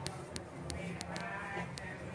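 Shop background: a handful of light, sharp clicks and a faint drawn-out voice about halfway through.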